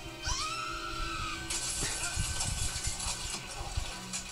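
A woman's scream about a third of a second in, rising then sagging in pitch and lasting about a second, over trailer music, followed by about two seconds of harsh hissing noise with low thumps. Movie-trailer sound heard through a television's speaker in the room.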